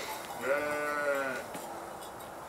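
A sheep bleating once: a single call about a second long.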